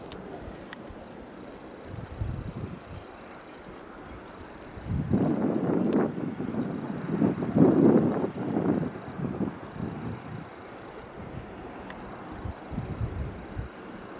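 Wind buffeting the microphone in uneven gusts, strongest from about five to nine seconds in.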